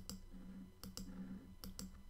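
Computer mouse button clicking, faint and sharp: a click followed by two quick press-and-release pairs, three tiles' worth of clicks in under two seconds.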